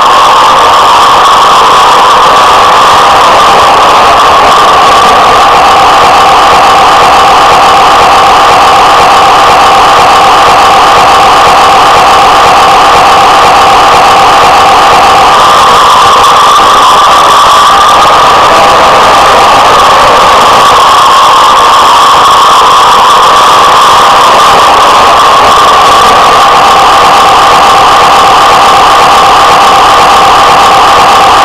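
Model train locomotive running on its track close to the microphone: a loud, steady drone from its motor and wheels.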